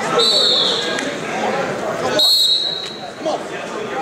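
Referee's whistle blown twice, two short shrill blasts: one just after the start and one about two seconds in. The whistles stop the wrestling and restart it with the wrestlers on their feet, over crowd chatter in the gym.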